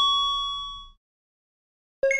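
A bell-like chime sound effect ringing and fading out over about a second, then dead silence, then a second chime struck right at the end, marking a title-card transition.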